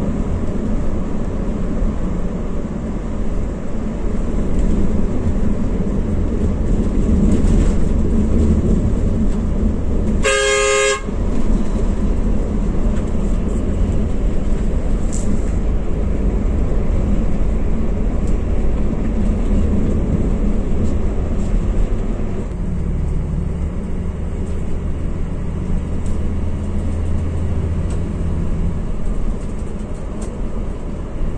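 A coach's engine and road noise drone steadily inside the cabin while under way. About ten seconds in, a vehicle horn sounds once for under a second, and the low engine note shifts about two-thirds of the way in.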